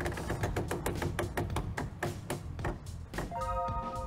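Game-show prize wheel spinning: its pegs click rapidly against the pointer, the clicks spacing out as it slows, over background music. A short held musical chord sounds near the end.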